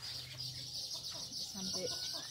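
Quiet outdoor ambience: a steady high-pitched trill throughout, with faint chicken clucking and a faint voice near the end.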